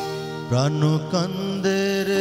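Male singer performing a Bengali song with live band accompaniment; his voice slides up in pitch twice, then holds a long note with vibrato from a little past the middle.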